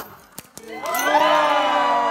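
A champagne bottle sabered open with a single sharp crack, followed from just under a second in by a crowd breaking into loud, sustained cheering.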